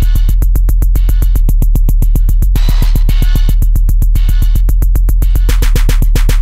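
Miami bass music: a drum-machine beat of rapid, even hits, about eight a second, over a constant deep sub-bass, with no vocals.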